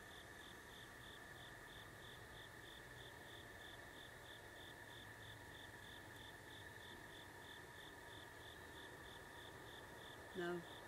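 Faint night insects: a steady high trill with a second, higher chirping that pulses evenly about three times a second, typical of crickets.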